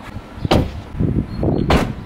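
Two solid thumps about a second and a quarter apart as a Tesla Model 3 Performance's door and then its trunk lid are shut from outside. To the reviewer's ear the closing sounds like a budget car, a Skoda or a Dacia, not like what the car's looks promise.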